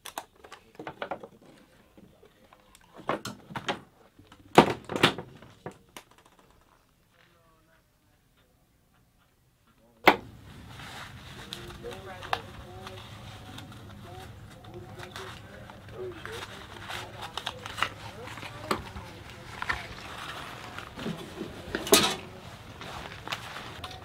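Sharp metallic clicks and knocks of a steel military ammunition can's lid latch being handled. After a few seconds of near silence comes steady open-air background with faint distant voices, a shouted range command ('Lock') and scattered clicks of gear being handled, one loud click near the end.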